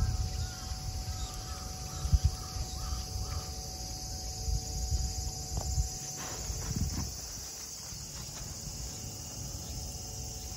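Outdoor ambience: crow-like caws repeat through the first few seconds over a steady high insect drone, with low uneven rumble underneath.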